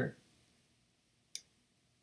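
A single short, sharp click of a computer mouse button while text is being selected on screen, with near silence around it.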